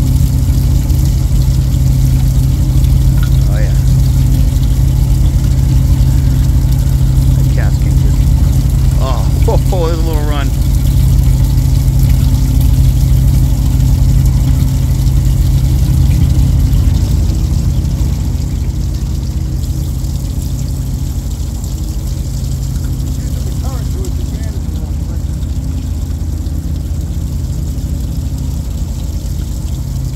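Boat engine idling with a steady low drone, easing slightly quieter a little past halfway.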